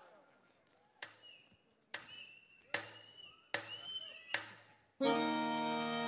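Intro sting under an animated logo: five sharp percussive hits under a second apart, each trailed by a brief sliding high tone. About five seconds in, loud music with sustained chords starts suddenly.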